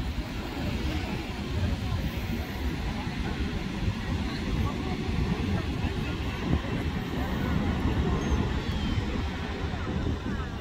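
Indistinct voices over a continuous low rumble of outdoor noise.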